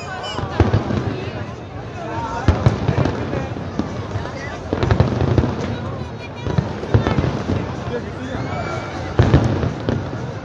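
Aerial fireworks bursting overhead: a string of sharp bangs a second or two apart, with people talking close by.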